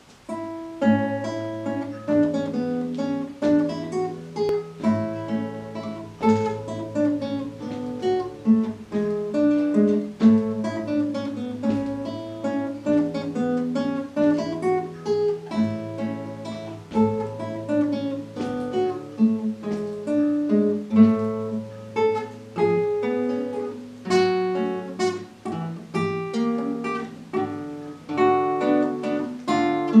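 Solo classical guitar: a plucked melody over held bass notes, broken by several sharply strummed chords. The playing begins right at the start, out of near silence.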